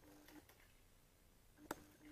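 Near silence: room tone, with one short faint click near the end.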